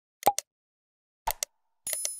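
Sound effects of a subscribe-button animation: two quick mouse-click pops about a quarter second in and two more a little after one second in. Just before the end comes a high ringing chime for the notification bell.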